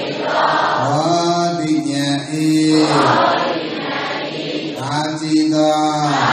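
Buddhist chanting by men's voices, long syllables held on a steady low pitch for a second or two each.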